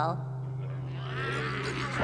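A steady low hum from the soundtrack, with a faint, wavering animal-like cartoon voice sound starting about a second in.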